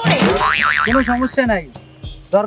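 Cartoon "boing" comedy sound effect: a sudden, loud twang whose pitch wobbles quickly, with sweeps falling away, then a second falling glide about a second and a half in.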